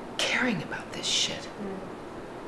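Only speech: a woman's soft, breathy voice, close to a whisper, with two short hissing syllables.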